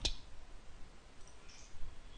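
A sharp computer click at the very start, then a couple of fainter clicks, from working a mouse and keyboard to copy and paste a web address into code.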